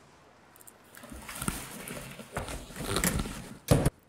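Quiet at first, then irregular rustling and handling noises from about a second in, ending in a short loud thump just before the end.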